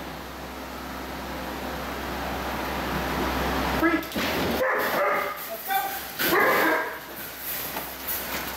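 A steady room hum, then, about halfway through, a dog gives several short, high yips and whines.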